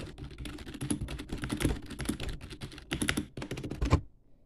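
Fast, busy typing on a computer keyboard: a dense run of key clicks that grows louder and more hectic about three seconds in and ends on one hard strike before stopping suddenly.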